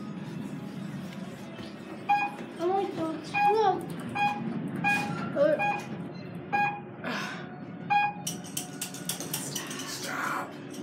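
An elevator car's electronic signal beeping: about eight short, steady beeps, each a second or less apart, starting about two seconds in and stopping near the end.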